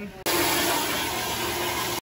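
A toilet that won't stop flushing: water rushing steadily and without let-up, cutting in suddenly just after the start.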